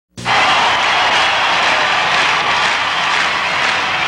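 A loud, steady rushing roar with no clear pitch, the sound of a TV show's animated opening, starting suddenly just after the beginning.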